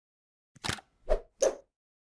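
Three short pops in quick succession, with silence between them: a logo-animation sound effect.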